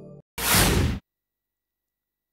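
A single short whoosh sound effect, lasting about two-thirds of a second, just after soft ambient music cuts off.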